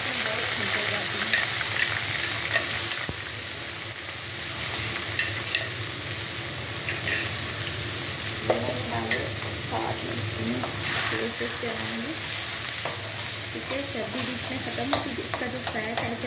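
Chopped onions sizzling in hot oil and rendered fat in an iron wok, a steady frying hiss, with a metal ladle starting to stir them near the end.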